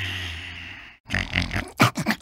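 A cartoon character's sleepy vocal sounds: a long breathy snore-like exhale over a low hum that fades away within the first second. After a short gap come a few quick grunts and snorts.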